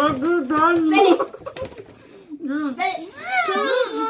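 Children's voices garbled by mouthfuls of marshmallows, talking and vocalising with no clear words, including a high sliding voice near the end.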